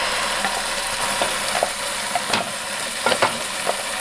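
Ground masala paste dropping into hot oil in a non-stick pan, sizzling steadily, with a few light clicks scattered through.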